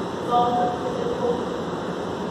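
Steady low background noise, with a short snatch of voice about half a second in.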